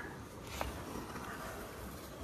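Quiet: a faint steady background hiss, with one small click about half a second in.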